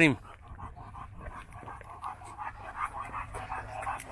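A dog panting in quick, short, uneven breaths while walking on a leash.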